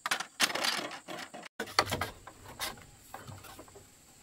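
Sharp knocks and scrapes of bamboo and a metal blade being handled, broken off by a sudden cut about a second and a half in, followed by lighter clicks and rubbing of bamboo.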